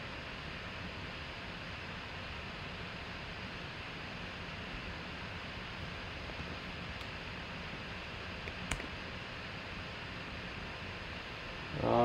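Steady, even background hiss of room tone, with a single short click about three-quarters of the way through.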